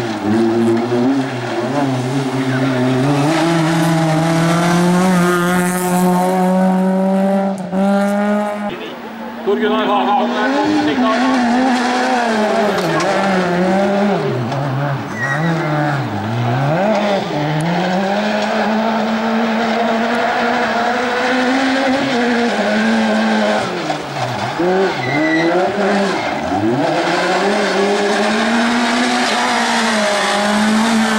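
Hatchback rally cars running flat out on a hill climb. First one engine holds a high, steady pitch after an upshift. About nine seconds in, a Ford Fiesta rally car's engine takes over, its revs repeatedly dropping and climbing again through gear changes and corners.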